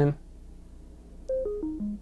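BenQ treVolo S Bluetooth speaker's power-off chime: four short electronic tones stepping down in pitch, starting about 1.3 seconds in. It signals that the speaker is shutting down.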